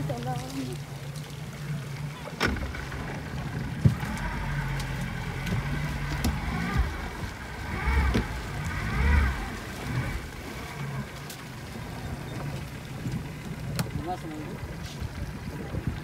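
Yamaha 115 outboard motor running steadily at low speed, a low hum under wind and water noise, with faint voices around the middle.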